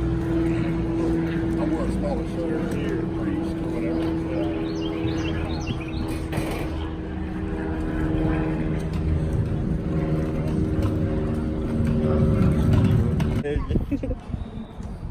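Indistinct chatter of people walking by, over a steady low hum made of several held tones that stops near the end.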